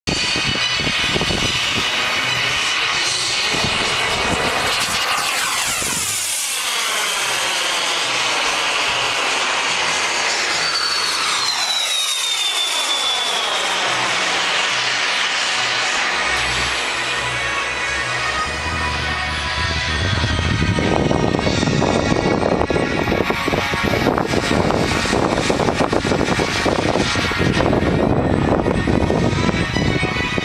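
Radio-controlled model jet making fast passes overhead, its engine whine sweeping down in pitch as it goes by, twice, about five and twelve seconds in. From about twenty seconds on, a louder, rougher noise takes over.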